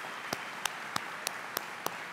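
Audience applauding. One nearby pair of hands claps sharply and evenly, about three times a second, over the crowd's applause.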